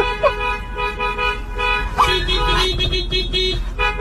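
Car horns honking in long held blasts at two or three different pitches that overlap and take turns, with a fresh blast starting near the end.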